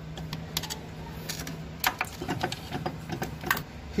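Irregular small metal clicks and scrapes as a thin screwdriver pries circlips off the brake-lever pivot of a Lambretta rear brake unit. A steady low hum runs underneath.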